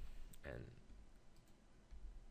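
Faint clicks of computer keyboard keys being pressed, a few separate taps.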